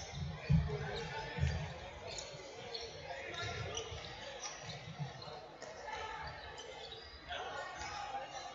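Futsal ball being kicked and bouncing on the wooden floor of an echoing sports hall: dull thumps, the two loudest about half a second and a second and a half in, with fainter ones later. Spectators' and players' voices carry throughout.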